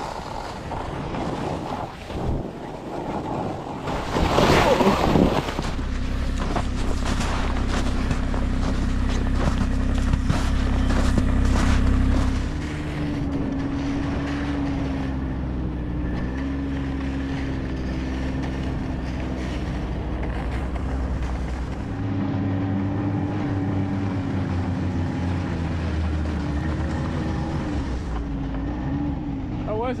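Wind rushing on the microphone, with a loud gust about four seconds in. From about six seconds a snowmobile engine runs steadily, and from about twelve seconds in its pitch rises and falls as the machine rides across the snow.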